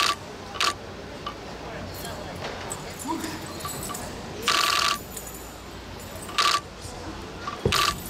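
Meteor hammer swung through a wushu routine, giving several short metallic jangles, the longest about half a second near the middle, and a dull thud near the end.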